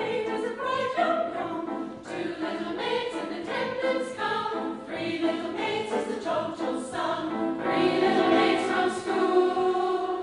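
A mixed choir of men's and women's voices singing together, swelling louder near the end.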